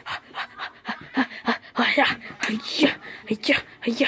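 A person panting and grunting in quick, irregular breathy bursts, about three a second, voicing a puppet's exertion.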